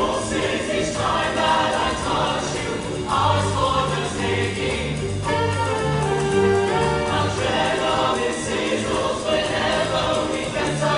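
A show choir singing in full harmony over instrumental accompaniment with a moving bass line, the music continuing without a break.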